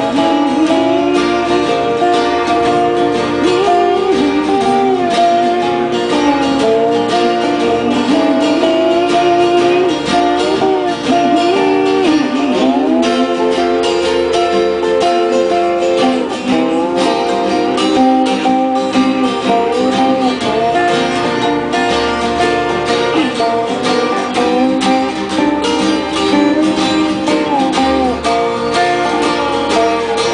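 Live bluegrass band playing an instrumental break on acoustic guitars, upright bass and dobro. The lead melody has many sliding, bending notes over steady strummed rhythm.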